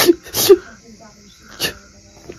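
A man sobbing in short, sharp bursts: two sobs in the first half second and another about a second and a half in.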